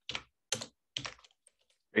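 Computer keyboard typing: four or five separate keystrokes, roughly half a second apart.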